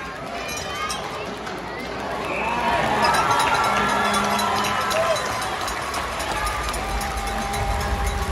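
Ice hockey play heard from rinkside behind the glass: skates scraping and sticks clicking on the ice, under arena crowd voices that swell louder about two to three seconds in and stay up.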